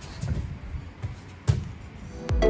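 Judo throw landing on the mats: a few soft shuffling thumps of feet on the mat, then one sharp thud about one and a half seconds in as a body hits the mat.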